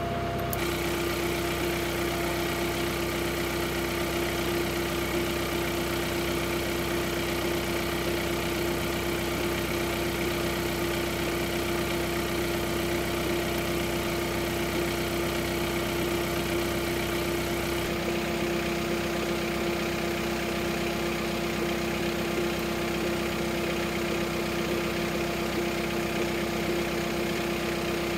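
Diesel engine of a John Deere compact utility tractor idling steadily, with an even, unchanging hum; its tone shifts slightly about two-thirds of the way through.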